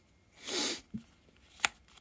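A short sniff through the nose, then a single small click near the end.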